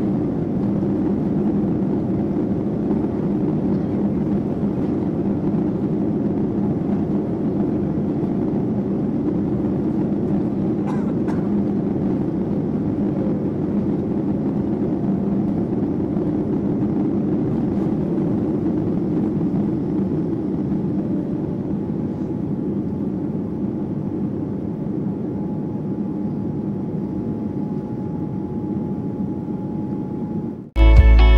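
Inside the cabin of a Boeing 787-9 during takeoff: the engines at takeoff thrust and the rumble of the runway roll make a steady, loud noise. It eases slightly past the middle as the jet lifts off, and a faint steady whine comes in near the end.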